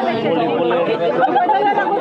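Many people talking at once: a steady, loud babble of overlapping voices.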